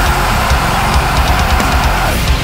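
Heavy metal band playing an instrumental passage: distorted electric guitars over bass and drums with rapid kick-drum hits. The full band comes back in at the very start after a short dip.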